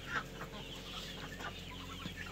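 Young poultry just moved from the brooder (chicks, ducklings, guinea keets and turkey poults) peeping in their pen: a scatter of short, high cheeps, several a second.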